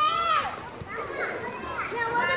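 Young children's high-pitched voices calling and chattering as they play, with one loud call right at the start.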